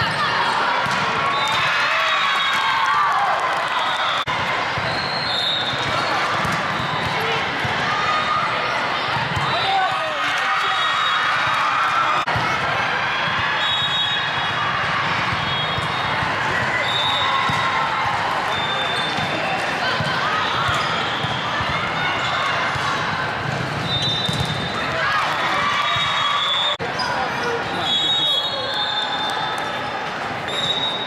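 Busy multi-court volleyball hall: many overlapping voices from players and spectators calling and chattering, with the knocks of volleyballs being hit and bouncing on the hard court. Short high squeaks recur throughout, from shoes on the court.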